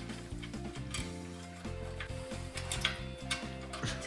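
Background music with a few irregular clicks of a ratchet wrench turning the worm-drive clamp screws on a motorcycle exhaust heat shield, more of them in the second half.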